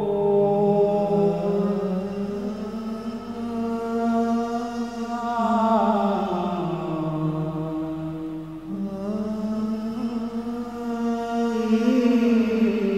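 A man singing a slow devotional song (a nasheed) into a microphone, in long, drawn-out notes that glide slowly up and down in pitch, with no beat.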